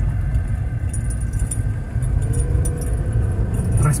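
Inside the cabin of a Jeep Wrangler Rubicon under way: the 3.6-litre V6 and road noise make a steady low rumble, with a faint engine note coming up in the second half and light high ticks of cabin rattles.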